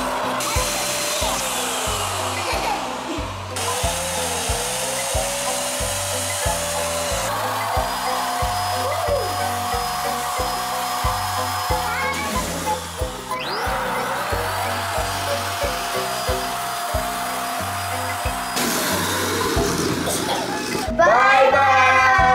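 Small electric balloon pump running in stretches of several seconds, stopping and starting as balloons are inflated, over background music with a steady beat; the music gets louder near the end.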